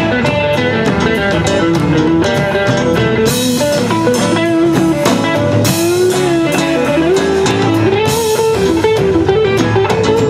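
Live rock band playing an instrumental stretch: a lead electric guitar line with bent, gliding notes over strummed guitars and a drum kit.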